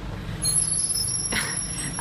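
Street traffic: a heavy vehicle's engine running close by as a low steady rumble, joined about half a second in by a high steady whine.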